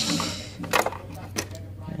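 Screwdriver working screws on the metal panel of a money-counting machine, giving a couple of sharp metallic clicks and clinks.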